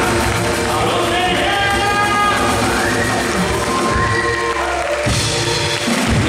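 Live Brazilian band playing: a man singing over guitar, congas and drum kit with a steady beat, with held and gliding sung notes. The drums drop away about five seconds in.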